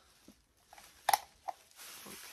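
Quiet handling of a small battery-powered LED acrylic lamp, with a sharp click just after a second in and a fainter click about half a second later as its switch is found and pressed to turn it on.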